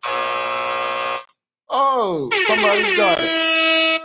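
Loud game-show buzzer sound effect, a steady blast about a second long, marking time up on the trivia question. After a short gap comes a second effect, a tone that falls in pitch and then holds steady.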